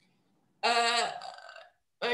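A woman's drawn-out hesitation sound, a steady-pitched 'ehh' about a second long, starting abruptly after a short silence and fading away.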